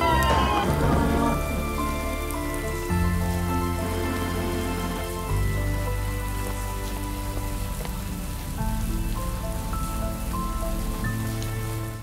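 Background music of sustained chords over a low bass that shifts to a new note every few seconds, with a faint steady hiss like rain beneath it.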